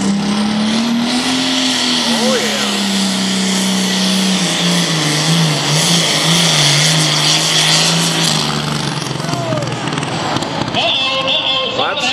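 Modified diesel pulling tractor running at full throttle under load as it drags the sled, its engine note rising, then falling and wavering before it drops away about eight seconds in.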